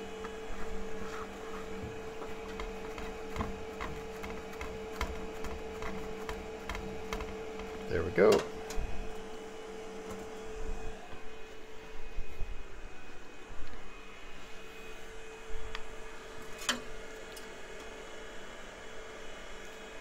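Steady hum from a 3D printer standing idle with its nozzle hot, fading away about halfway through, under scattered light clicks and rustles of a plastic Bowden tube and filament being handled, with one sharper click near the end.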